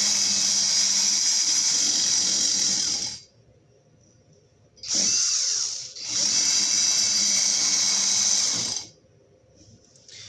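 Cordless drill running fast with a tungsten carbide burr cutting into a steel angle, a high-pitched grinding whir. It runs for about three seconds, stops, gives a short burst about halfway, then runs again for about three seconds and stops shortly before the end.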